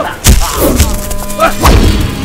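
Two heavy fight-scene impact thuds, one about a quarter second in and another near the end, over background film score.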